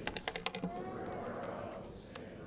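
Loose sheets of paper being shuffled and set down on a wooden pulpit: a quick run of crisp rustles and taps in the first half-second, then softer rustling.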